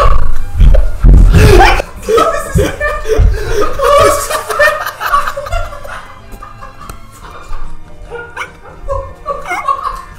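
Several men laughing hard, with music playing underneath. Loud low thuds come in the first two seconds, and the laughter dies down after about six seconds.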